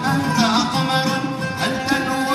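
Live Middle Eastern ensemble music: a voice or melody line bending in pitch over steady instrumental accompaniment.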